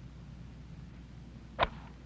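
A golf club strikes the ball once, a single short sharp crack about one and a half seconds in, over a faint steady hum.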